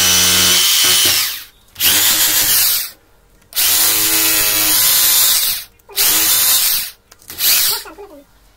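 Electric power drill boring into a masonry wall, run in short bursts: about five runs of one to two seconds each, stopping briefly between them.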